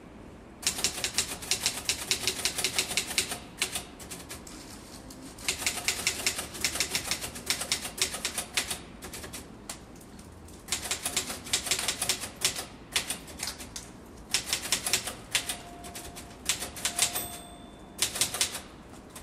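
Rapid typing on keys, in runs of a few seconds broken by short pauses.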